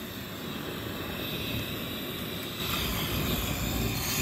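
Portable gas-canister camping stove burning with a steady hissing roar, which grows louder about two-thirds of the way in.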